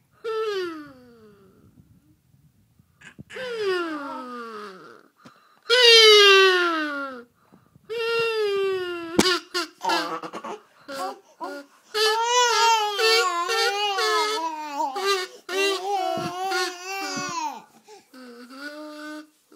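A young child's voice, sung or hummed into a small tube held at the lips. It makes long falling sliding notes, then a run of held, wavering notes with small steps in pitch near the end.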